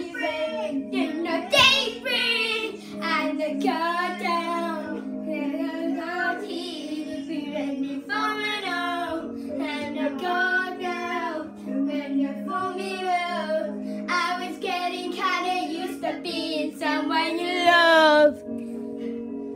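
A child singing a pop-style song over a steady backing track.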